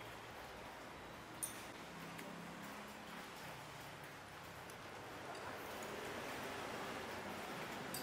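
Faint handling sounds of wrenches tightening the knife-holding screw on a stopped cashew cutting machine, with one small click about a second and a half in, over low room noise.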